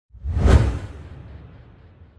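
Intro-logo whoosh sound effect with a deep low boom, swelling to a peak about half a second in and then fading away over the next second and a half.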